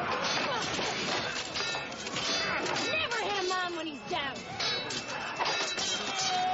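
Fight sound effects: repeated hits and crashes, with shouts and yells in the middle, over background music.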